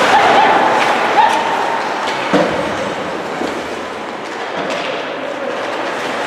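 Ice hockey play in a rink: skates scraping on the ice under a steady arena din, with short shouts in the first second or so and a sharp knock about two seconds in.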